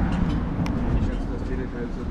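Outdoor street ambience: a steady low rumble with people's voices, and a single sharp click about two-thirds of a second in.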